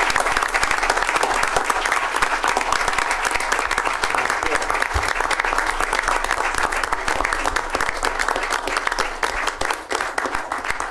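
An audience applauding steadily, a dense mass of hand claps.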